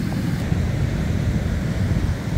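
Wind blowing over the microphone as a steady low noise, with ocean surf washing up the beach behind it.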